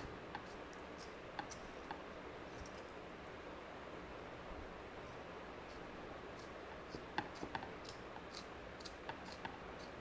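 Faint scraping of a pencil being turned in a small plastic hand-held sharpener, the blade shaving the wood, with scattered small clicks that come more often in the second half.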